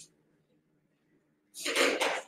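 A faint steady hum, then about one and a half seconds in a single short, loud burst from a person: a sneeze.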